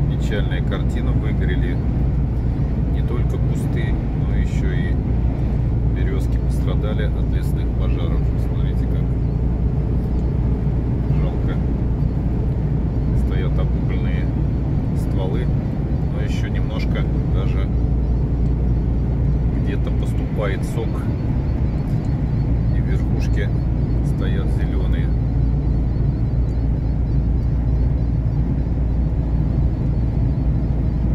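Truck cab interior while cruising on a highway: the diesel engine and tyres give a steady low drone. Faint intermittent voices come and go over it, stopping a few seconds before the end.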